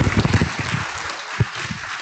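Audience applauding, many people clapping together.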